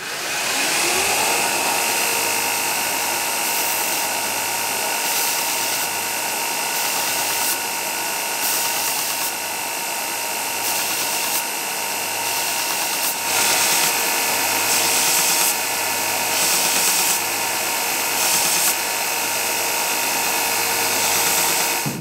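A belt grinder spins up over about the first second and then runs steadily with a scalloped abrasive belt. The grinding hiss rises and falls as a wooden knife handle is pressed to the belt and lifted away, to soften its edges without cutting into them.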